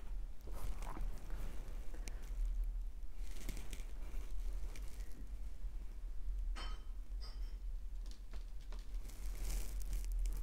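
Oil-painting materials being handled off the canvas: irregular soft rustling and scraping, with a couple of light clicks about six and a half to seven and a half seconds in, over a steady low hum.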